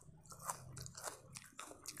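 Raw onion ring being bitten and chewed close to a lapel microphone: a run of small, soft, crisp crunches.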